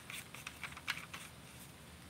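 Light, quick clicks and taps as a Daiwa Alphas baitcasting reel is handled against a rod's reel seat, about eight in the first second or so, then fainter ticks.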